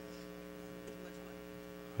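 Steady electrical hum of several unchanging tones, heard alone in a pause between spoken phrases.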